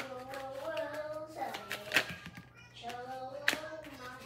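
Tarot cards being handled and laid down on a table: a few sharp clicks and slaps of card on card and card on tabletop, the loudest about two seconds in and again about three and a half seconds in.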